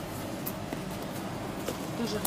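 Faint handling noise of a shoe being turned over in the hands: a few light clicks and rustles over a low background hum.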